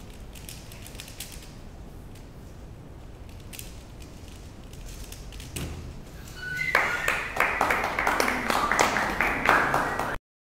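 Rubik's cube being turned fast in a speedsolve, faint quick clicks, then a soft knock as the solved cube is set down on the timer mat. About seven seconds in, loud applause and cheering breaks out, the loudest part.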